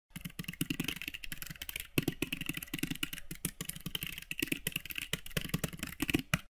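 Typing sound effect: a fast, irregular run of keyboard key clicks that goes on throughout, accompanying text being typed onto the screen.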